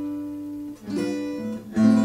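Zager ZAD50CE OM-size acoustic guitar played fingerstyle in a slow melody of held, ringing notes, with a new note plucked about a second in and a louder chord struck near the end.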